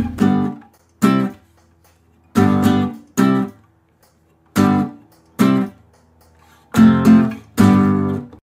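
Acoustic guitar strumming short stopped chords in pairs, a longer chord then a shorter one, about every two seconds, each cut off quickly with near quiet between: the song's closing figure.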